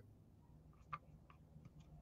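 Near silence, with a few faint, irregular light clicks of small craft pieces being handled on a cutting mat.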